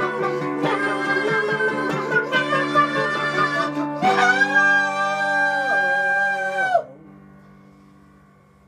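Mandolin picking and keyboard playing under male singing. About four seconds in, the song closes on a long held sung note that wavers slightly and stops sharply near the end, leaving a chord fading out.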